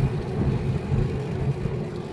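Steady low rumble of a car's engine and tyre noise, heard from inside the moving car's cabin.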